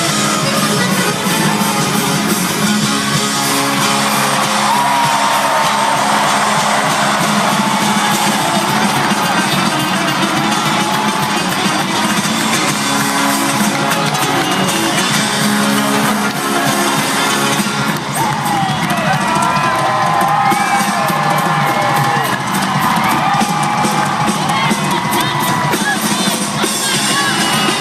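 Loud live band playing an instrumental passage of a country-rock song: guitar and drums under a lead line with sliding, held notes, with audience cheering and whoops mixed in.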